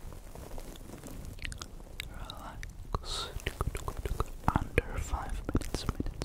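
Close-up ASMR mouth sounds right at the microphone: quick wet clicks and smacks with short breathy, whisper-like sounds between them, getting busier and louder in the second half.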